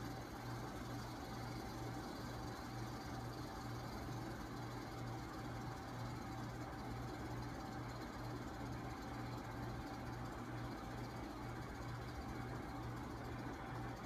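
Steady low mechanical hum that pulses evenly about twice a second, with a thin steady whine above it and a faint hiss.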